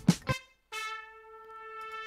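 Rhythmic music playback stops just after the start. After a brief gap, a sampled trumpet part from Native Instruments Session Horns plays alone, holding one long steady note.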